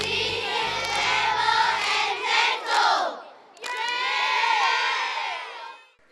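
A large group of schoolchildren shouting together in two long cheers, the second starting after a brief pause about halfway through.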